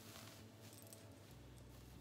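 Near silence, with faint rustling of a wig's hair and lace as it is pulled on over a wig cap. A low hum comes in a little past halfway.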